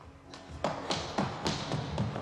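Film soundtrack: score music under a quick run of sharp taps, about four a second, starting about half a second in.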